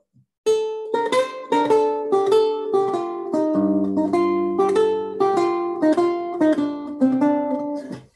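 Renaissance lute played solo: a quick line of single plucked notes, about four a second, starting about half a second in, with held bass notes sounding under it from about halfway. It is played in a rhythmic variant, the reverse of a dotted pattern, with notes grouped close and spaced, as a right-hand exercise for speed and economy of movement.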